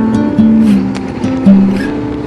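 Background music: an acoustic guitar playing a gentle instrumental intro, notes changing about every half second.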